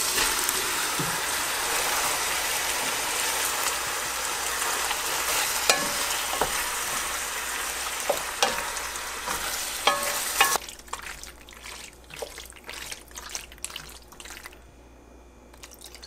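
Tomato sauce, sausage and pasta sizzling in a hot stainless steel pot while a wooden spoon stirs them, with a few knocks of the spoon against the pot. About ten seconds in the sizzle cuts off suddenly, leaving only quieter, wet stirring.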